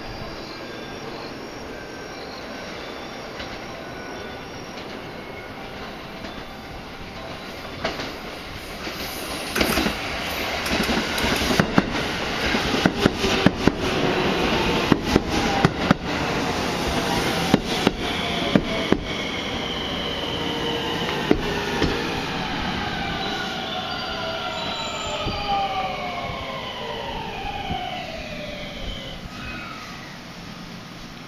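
JR West 223 series electric train running into a station: sharp clacks of the wheels over rail joints as the cars pass, then a whine from the traction motors that falls steadily in pitch as the train brakes toward a stop.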